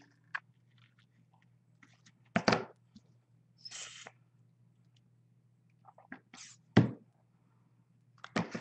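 Craft handling noises as fingers press paper pieces onto a canvas: scattered light clicks and two louder brief knocks, with a short hiss near four seconds, over a steady low electrical hum.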